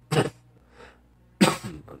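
A man coughing: a short cough at the start and a louder one about a second and a half in.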